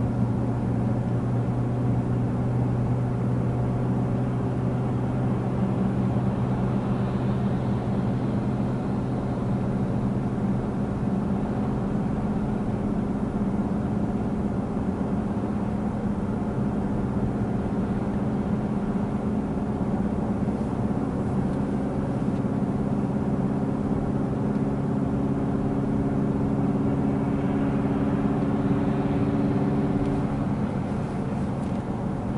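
Car engine and road noise heard from inside the cabin, a steady drone with a few low hum tones, as the car drives uphill on a highway; it grows slightly louder near the end.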